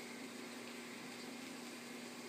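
Steady room noise: an even hiss with a low, constant hum, like a fan or appliance running.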